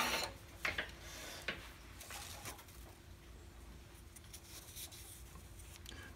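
Lathe drilling noise cuts off just after the start, then faint handling sounds over a low steady hum: a few light wooden clicks and taps as the freshly parted walnut napkin rings are moved about on the lathe.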